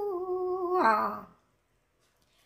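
A woman singing Hmong kwv txhiaj (sung poetry) unaccompanied, holding a long drawn-out note that steps down in pitch about a second in and fades away about halfway through.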